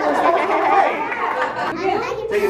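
Several people talking over one another: mixed voices from a party group around a table.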